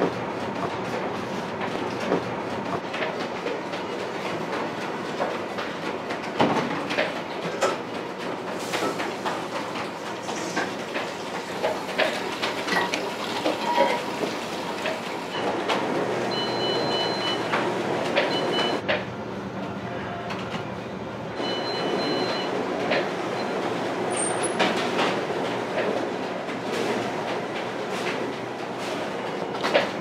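Bakery kitchen noise: a steady machine rumble with frequent knocks and clatter of metal loaf tins and baking trays as loaves are handled. A high beeping comes and goes several times in the middle.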